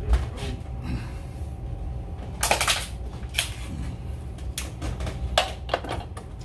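Handling noise on a cluttered workbench: a run of short knocks and clicks as things are reached for, picked up and set down, with a dense clatter about two and a half seconds in, over a steady low hum.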